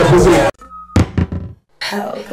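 Loud party music with a beat cuts off abruptly half a second in. A short steady beep follows, then one sharp knock and a few quicker knocks, the sound effects of an animated logo intro.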